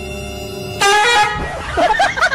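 Background music, then about a second in a sudden loud horn-like blast, followed by a jumble of short, wavering pitched sounds.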